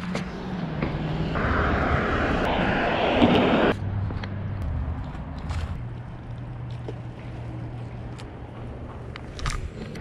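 Outdoor ambience with motor-vehicle noise. A loud rushing passage in the first few seconds cuts off abruptly about four seconds in, and a quieter steady low hum follows.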